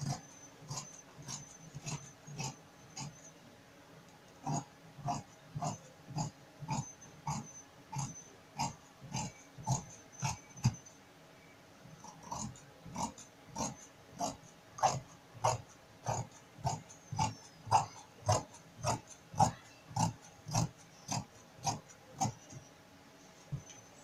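Large tailor's shears cutting through trouser cloth, a steady snip of the closing blades about twice a second, in long runs with two short pauses.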